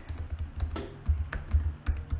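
Typing on a computer keyboard: a run of keystrokes at an uneven pace.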